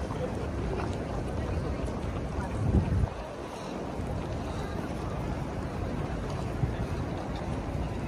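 Wind buffeting a handheld camera's microphone, a continuous low rumble with a stronger gust about two and a half seconds in, over the general noise of a busy city street.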